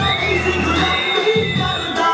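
An audience cheering and shouting over loud music that carries a held, gliding melody line.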